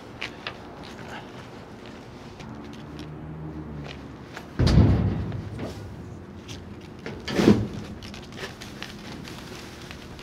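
Two heavy thuds on a steel dumpster about three seconds apart as a man clambers into it; the first is the louder and booms on for about a second.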